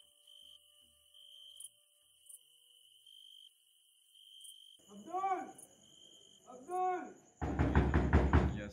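A faint, broken high chirring, then a voice calling out twice from outside, each call rising and falling in pitch, about five and seven seconds in. Near the end, loud rapid knocking on a door begins.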